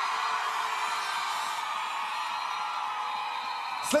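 Studio audience cheering and whooping in a steady, slowly easing roar.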